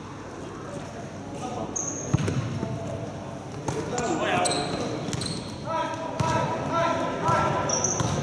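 A basketball bouncing on the hard floor of an indoor gym as it is dribbled, the thuds irregular and echoing in the large hall, with people's voices over it.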